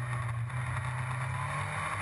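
Formula Ford single-seater race car engines running at speed on track, heard as a steady low drone.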